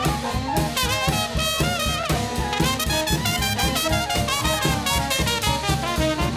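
Small swing jazz band playing live: trumpet carrying the melody with trombone beside it, over upright bass, piano and drums keeping an even beat.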